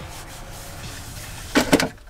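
A low steady background, then a short clatter of sharp knocks about a second and a half in.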